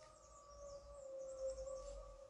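A faint, steady tone with a weaker higher tone above it, drifting slightly lower in pitch.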